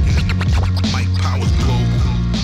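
Hip hop outro music with turntable scratching: quick swooping scratches over a steady bass line.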